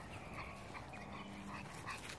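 Faint, short, high-pitched vocal sounds from a pug puppy, several in quick succession, while it scampers over grass.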